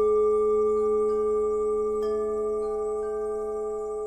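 Tibetan gong music: a struck metal tone ringing out at several pitches and slowly fading. A softer strike about two seconds in adds a new, higher tone.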